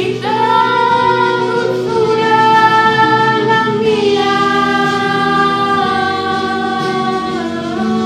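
Sung vocals over music, holding long notes that change pitch every couple of seconds and step down near the end.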